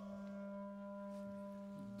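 A wind orchestra softly holds one steady sustained note with its overtones, with no singing over it.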